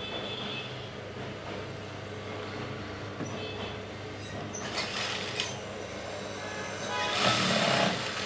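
Industrial single-needle sewing machine stitching in two short runs, one about five seconds in and a longer one near the end, over a steady low hum.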